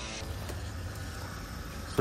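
Water hissing steadily from a pistol-grip garden hose spray gun onto potted plants, with a low rumble underneath, starting just after the beginning.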